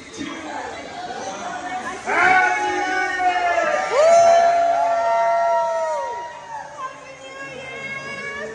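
A party crowd chattering and cheering. Loud shouts break out about two seconds in, followed by several long, held whoops at different pitches that fade out around six seconds.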